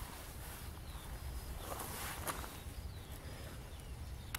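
Wind rumbling on the microphone, with a few short bird chirps and a single brief click about two seconds in.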